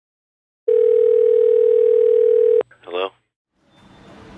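Telephone dial tone: a single steady tone for about two seconds, cut off by a click, then a brief wavering sound.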